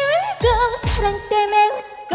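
Female trot singer singing live over a band accompaniment with a steady beat; her held notes waver with vibrato. The music dips briefly just before the end.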